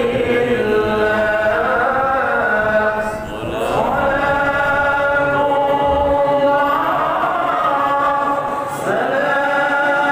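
Devotional Islamic chanting of sholawat: voices singing long, drawn-out melodic lines, with brief breaks between phrases about three and nine seconds in.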